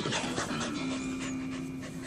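A dog panting rapidly right against the microphone.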